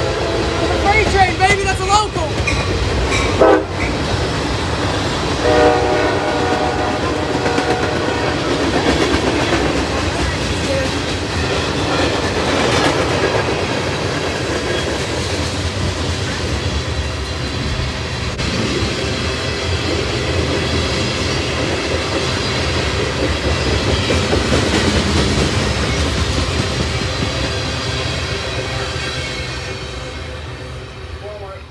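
Freight train of tank cars rolling past close by: a steady rumble of steel wheels on rail with clickety-clack over the joints, fading near the end as the last car goes by. A train horn sounds for a few seconds about five seconds in.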